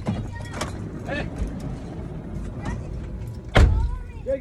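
Car interior with a low steady engine rumble and faint voices, then a single loud thump about three and a half seconds in: a car door being shut.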